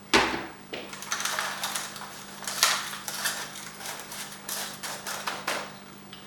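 A knock just at the start, then irregular rustling and light tapping as handfuls of moist seed starter mix are dropped and pressed into the small cells of a plastic seed tray.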